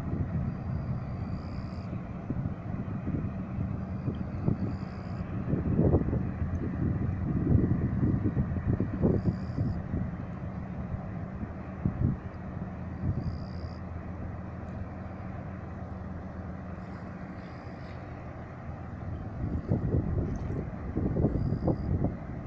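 Gusty wind buffeting the microphone over a steady low engine hum that fades out near the end. Short high chirps recur every couple of seconds.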